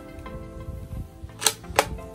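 Air rifle's bolt clicking twice as a pellet is loaded, two sharp metallic clicks about a third of a second apart, over steady background music.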